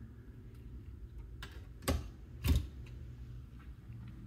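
Spray head of a spring-coil kitchen faucet being clipped back into its holder on the faucet arm: two short, sharp clicks about half a second apart, with a few faint ticks around them.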